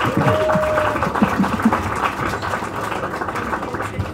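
Audience clapping steadily in a crowded room, with a few voices calling out over the applause.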